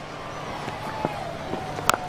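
Steady low stadium crowd noise, then near the end a single sharp crack of a cricket bat striking the ball in a full, lofted swing.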